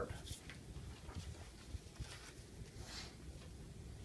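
Faint rustling and light ticking of kinesiology tape and its paper backing being handled and smoothed onto skin, with a brief higher rustle about three seconds in.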